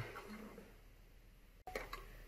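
Faint room tone, then a few faint clicks of a clear plastic darts-flight box being handled near the end.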